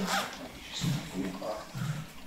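Quiet speech picked up faintly, in short phrases, with a brief rustle near the start.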